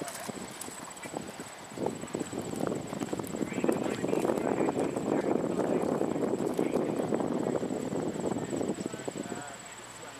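A horse's hooves trotting on sand arena footing, growing louder about two seconds in and dropping away shortly before the end.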